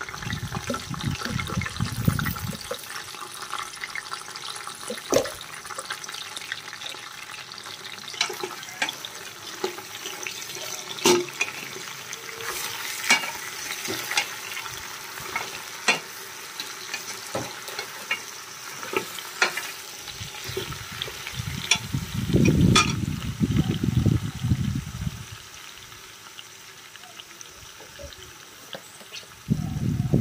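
Mutton trotters frying in oil in an aluminium pressure cooker, with a steady sizzle. A steel ladle stirs them, clicking and knocking against the bones and the pot many times. A low rumble comes at the start and again about two-thirds of the way through.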